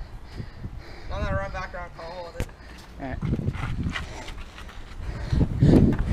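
Feet and hands thudding heavily against a plywood parkour wall near the end as a runner dashes over it.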